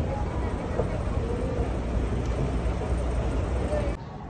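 Low, steady mechanical rumble of a moving escalator, with faint voices in the background. The rumble stops abruptly right at the end.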